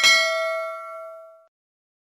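A bell-like chime sound effect, struck once right at the start and ringing with several tones at once, fading away by about a second and a half in.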